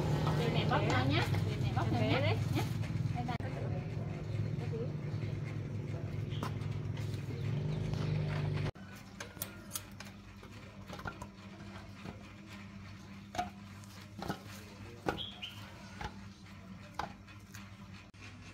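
Voices over a steady low hum, which stops abruptly about nine seconds in. After that it is quieter, with irregular short scraping clicks of a knife blade shaving the rind off a sugarcane stalk.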